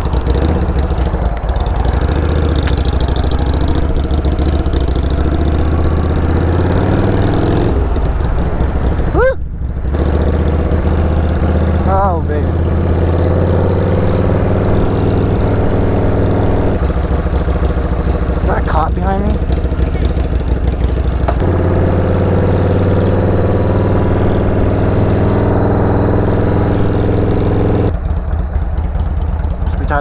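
Harley-Davidson Sportster 883's air-cooled V-twin running under way on the road. Its note drops and climbs again several times as the bike rides along.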